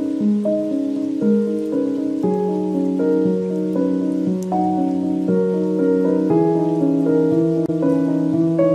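Mellow lofi hip hop music, sustained chords and a slow melody shifting every half second or so, with a steady rain-sound layer beneath it.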